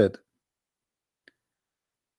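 A man's voice finishing a word, then near silence broken by one faint, short click about a second and a quarter in.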